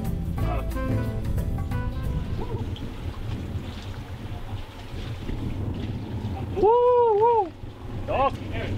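Background guitar music fades out about two seconds in, leaving wind rumbling on the microphone. Near the end a loud, high-pitched cry rises and falls twice.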